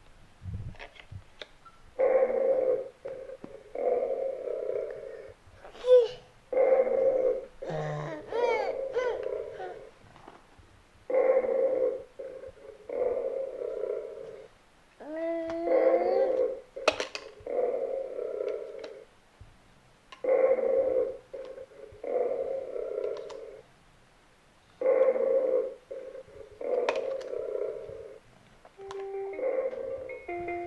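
A My First Sony EJ-M 1000 children's toy giving out steady electronic tones, each about a second long, in pairs that repeat about every four and a half seconds.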